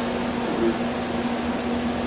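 Blower door fan running steadily, holding the house depressurized for an air-leakage test: an even airflow noise with a constant low hum.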